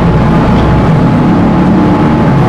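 Steady, loud mechanical rumble with a low hum, like a running engine or machine.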